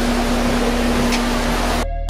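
Steady outdoor background noise with a low, steady hum. Near the end it drops out abruptly for a moment.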